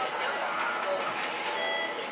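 Background chatter of other diners in a restaurant, with a short electronic beep about one and a half seconds in.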